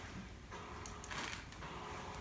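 Rustling of a nylon-fabric cat play tunnel as a kitten moves inside it, a brief burst about a second in, over a low steady hum.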